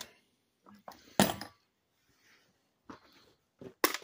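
A few short, sharp clicks and taps of small hand tools being handled: one about a second in, a louder one near the end, and fainter ticks between.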